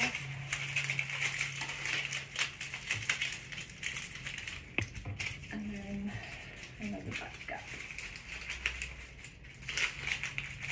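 Dry stems and leaves of a dried-flower bouquet rustling and crackling as stems are handled and pushed into the bunch, with many small sharp clicks.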